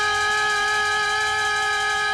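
A singer holding one long note at a steady pitch.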